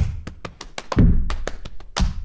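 Body percussion by two performers: fast, rhythmic hand claps and slaps, several sharp strokes a second, with a deep thump about a second in.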